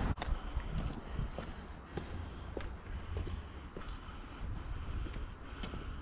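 Footsteps on a pavement, faint regular taps about every half second, over a steady low rumble of wind on the microphone.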